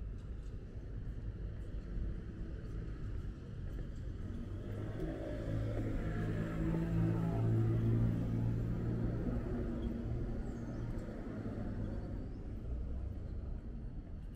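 A motor vehicle's engine passing along the street, growing louder to a peak about seven or eight seconds in and then fading, over a steady rumble of city traffic.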